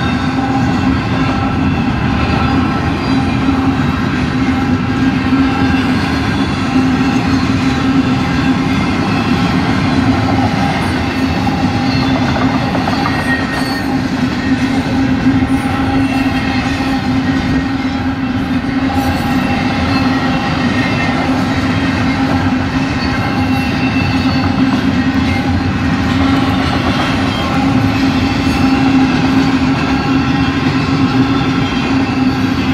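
Double-stack container cars of a freight train rolling steadily through a grade crossing, wheels rumbling and clacking on the rails. Over them, the crossing's two electronic bells of different types ring without a break.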